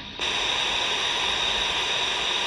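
Steady static hiss from the C. Crane Skywave SSB 2's speaker on the aircraft band. It cuts in sharply just after a transmission ends: the open channel heard between air traffic control calls, with no station on the air.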